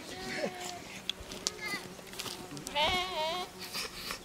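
Sheep bleating: a short call about a second and a half in, then one long bleat with a wavering, trembling pitch about three seconds in.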